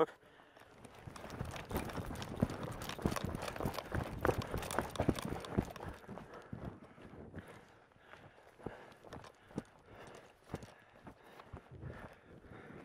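Footsteps of people moving quickly on hard ground: a rapid, irregular run of knocks, densest and loudest for the first half, then thinning to scattered steps.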